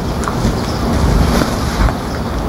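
A loud rushing noise with a deep rumble, building gradually, from an advert's soundtrack played over a hall's sound system.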